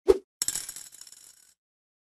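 Sound effect of a coin dropping into a piggy bank. A short thud is followed by a jingle of clinking coins that dies away over about a second.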